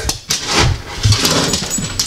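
Dog food being fetched from a low cupboard: soft rustling with a couple of dull knocks.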